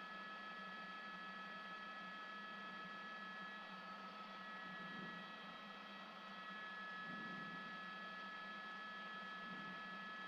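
Faint, steady cabin noise of a news helicopter heard through the reporter's open microphone: a constant high whine over a low hum, with no change.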